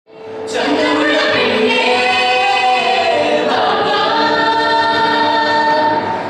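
A mixed choir of teenage girls and boys singing a group song together in harmony, fading in over the first half second and then holding long sustained notes.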